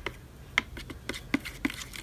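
A few light, irregular clicks and taps, about five in two seconds, from utensils and containers being handled while mixing slime.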